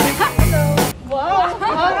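Background music with a steady drum beat and bass notes, which cuts off abruptly about a second in and gives way to several people chatting.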